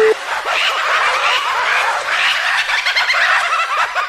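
A last short telephone busy-tone beep as the call cuts off, then a dense chorus of many overlapping short chirping animal calls filling the rest.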